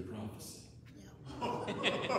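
A man's voice with chuckling, then, about one and a half seconds in, a congregation laughing together.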